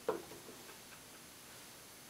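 A few light clicks and taps from makeup tools being handled close up. The first click comes just after the start and is the loudest; smaller ticks follow about every quarter second and die away just past a second in.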